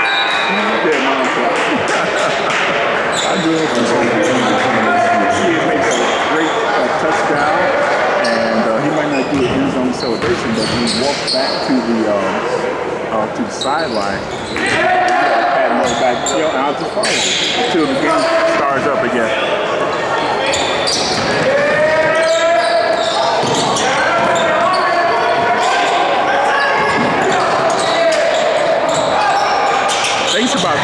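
A basketball bouncing on a hardwood gym floor, with many players' and spectators' voices shouting and talking and a few sharp knocks, echoing in a large gymnasium.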